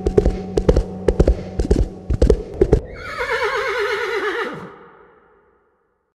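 Horse hooves clopping, about a dozen irregular hits, then a horse whinnying in one shaky, wavering call that falls in pitch and fades out about five seconds in.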